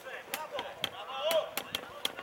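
Players' voices calling across a football pitch, mixed with about six sharp knocks spread through the two seconds.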